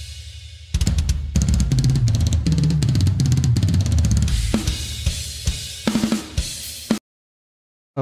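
Drum kit played fast, heard through the reaction video's playback: a cymbal fades out, then a dense run of strokes on toms, bass drum and Meinl cymbals, with tom fills stepping from one tom to the next in both directions. The bass drum is triggered. The playing cuts off abruptly about a second before the end.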